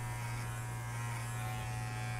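Wahl Figura cordless lithium-ion horse clipper running with a steady, quiet hum as its blade clips hair along a horse's jawline.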